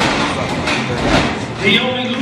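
Rumbling, rattling noise with a heavy thud about a second in, then a voice shouting near the end.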